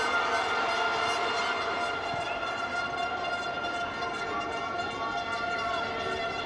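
Football stadium ambience during live play: a steady drone of several held tones over a low crowd hum, with no clear single event standing out.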